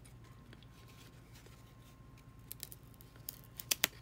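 Cardboard baseball cards being flipped through by hand: a run of sharp little clicks and snaps in the second half, the loudest pair near the end, over a faint low hum.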